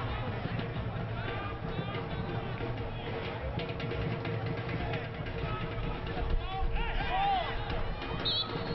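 Football stadium crowd ambience: a small crowd's scattered shouts and calls over a constant rumble, with a steady hum running underneath. A few louder calls come near the end.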